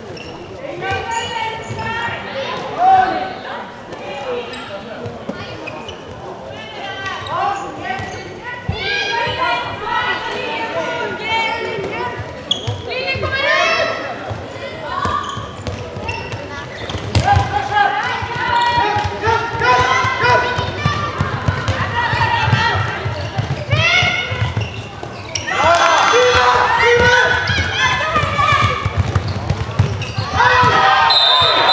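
A handball bouncing repeatedly on a sports-hall floor during play, with players' voices calling out to each other over it. The voices get louder over the last few seconds.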